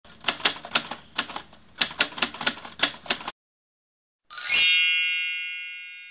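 Typewriter sound effect for a title appearing: a quick run of keystrokes for about three seconds, then a short pause and a single bright bell ding, the loudest sound, that rings on and slowly fades.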